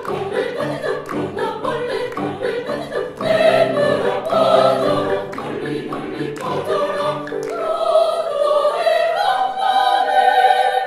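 Mixed amateur choir singing classical choral music with piano accompaniment; the voices grow louder about three seconds in.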